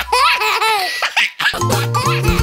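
A cartoon baby's high-pitched giggling laugh, with light music underneath. About a second and a half in, the laugh gives way to the bouncy start of a children's song tune.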